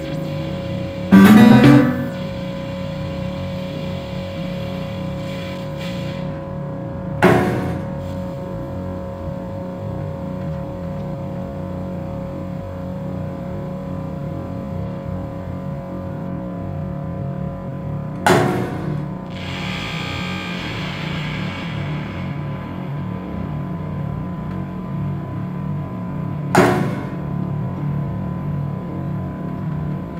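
Experimental free-improvised music: a steady electronic drone with four sharp struck notes that ring out at irregular gaps, the loudest about a second in.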